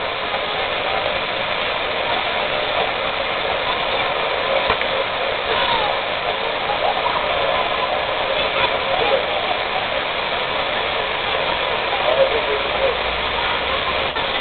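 Steady splashing of a plaza fountain's falling water jets, with faint voices in the background.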